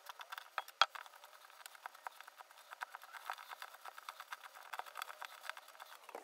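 Hands kneading dough in a stainless steel bowl and then on a countertop: a quick, irregular run of small clicks and taps, with one louder click about a second in.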